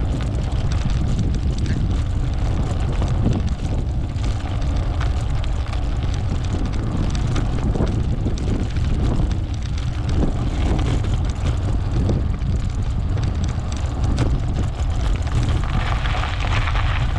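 Wind buffeting the microphone of a handlebar-mounted camera while riding, a steady low rumble.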